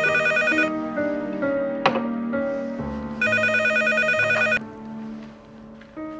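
Landline telephone ringing twice: a ring that stops just after the start, then a second ring of about a second and a half a few seconds in. Background music with sustained notes plays under it, with a short sharp swish about two seconds in.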